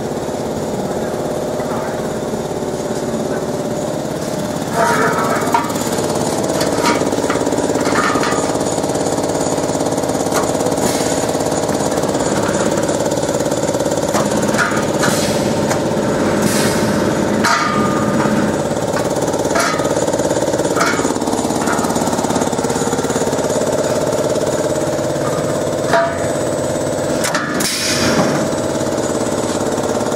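Steady machinery drone in a workshop, several hum tones layered together, with occasional short metal knocks and clicks as a steel pipe is handled in the laser cutter's rotary chuck.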